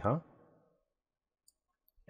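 A spoken "huh?" fades out, then near silence with two faint computer-mouse clicks, one about a second and a half in and one near the end.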